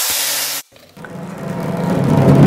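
Hot oil tempering with dried red chillies and curry leaves hitting a pot of sambar, sizzling loudly. It cuts off sharply after about half a second. About a second in, music fades in and grows louder.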